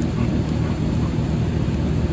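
Steady low rumble and hiss of background noise in a large warehouse, with no clear single source.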